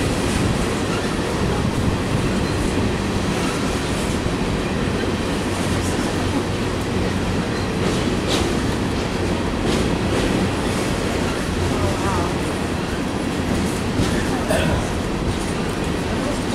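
Empty coal hopper cars of a freight train rolling past, a steady rumble of steel wheels on rail with a few sharp clicks.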